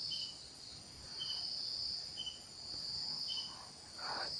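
Insects chirping: a high steady trill that swells and fades in slow waves, with a short, lower chirp about once a second.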